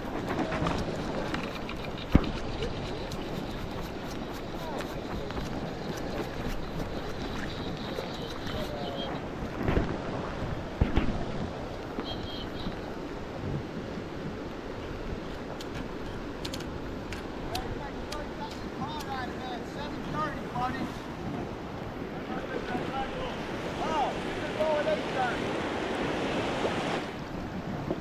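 Shallow river water rushing steadily over a riffle, with wind buffeting the microphone and a sharp knock about two seconds in.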